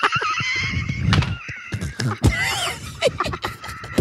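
Men laughing hard, with high, wavering laughs that rise and fall.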